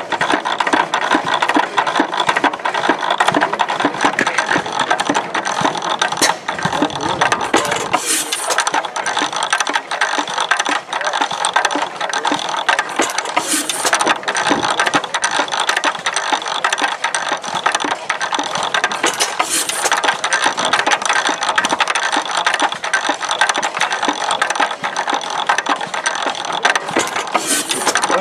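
Economy 4 HP hit-and-miss gas engine and its chain-and-sprocket drive running, with a fast, steady mechanical clatter. A louder burst comes about every six to nine seconds.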